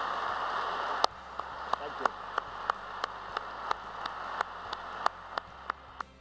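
Audience applauding. About a second in, the applause thins to a few lone claps, about three a second, which slowly fade.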